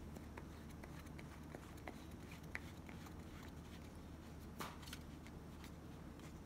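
Faint scattered clicks and light taps of a small plastic screw-cap container being handled, over quiet room tone, with one slightly louder soft knock about four and a half seconds in.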